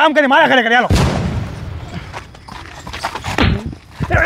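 A man speaking, cut off about a second in by a single loud bang whose rush of noise dies away over about a second, followed by a few faint knocks.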